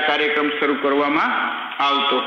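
A man's voice lecturing: speech only.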